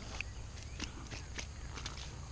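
A small bream flopping on the grass: a few faint, soft taps and rustles.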